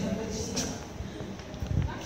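Faint voices in a room with a few irregular dull knocks, the loudest about half a second in and near the end.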